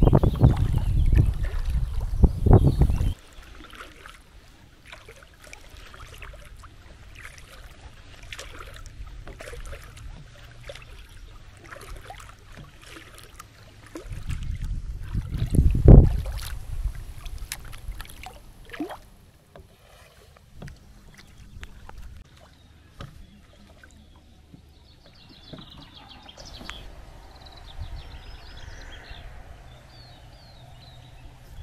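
Kayak paddling on calm water: the paddle blades dipping and dripping, with small splashes at irregular intervals. A low rumble, likely wind on the microphone, covers the first few seconds and returns briefly about halfway through.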